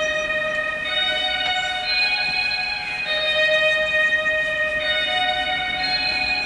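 A reverb-soaked, spacey, atmospheric guitar melody played on its own. It moves in long held notes, with a new note about every second.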